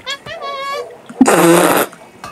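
A loud cartoon fart sound effect, about two-thirds of a second long and starting a little over a second in, coming after a short high-pitched voice.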